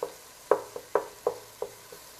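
A utensil knocking against a pot about five times, roughly every half second, as tomatoes and onion are mashed in hot oil, with a light sizzle underneath.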